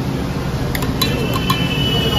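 About five quick clinks of a metal spoon against a steel bowl and clay tea cups, bunched from about a second in. One clink leaves a short ringing tone, and a steady low hum runs underneath.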